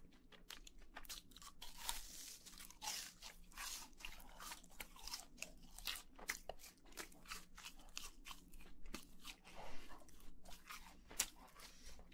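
Close-miked chewing of crispy fried food: a dense run of crunches as the batter breaks up in the mouth, with one sharper crunch near the end.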